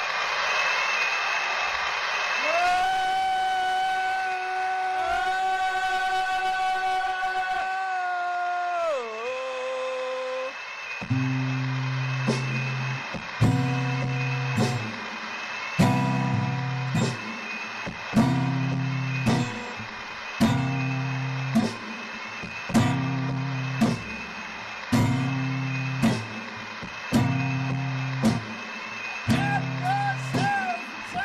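Electronic keyboard and acoustic guitar playing: a long held keyboard tone that bends down in pitch, then a repeating pattern of low notes with sharp percussive clicks about once a second.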